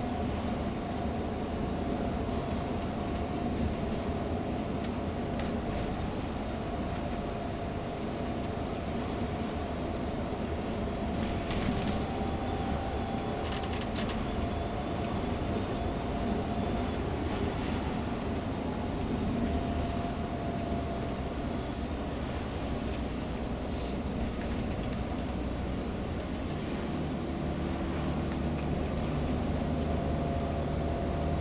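Steady engine and road noise inside a moving tour coach at cruising speed, with a faint steady whine and a few light clicks about halfway through.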